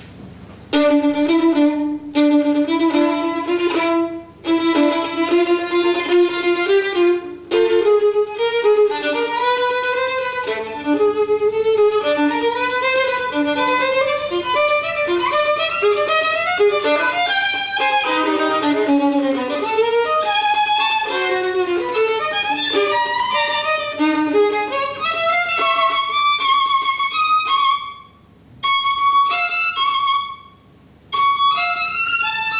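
Solo violin, bowed, playing a fast passage of many short notes with a few brief breaks; near the end it turns to short repeated high notes.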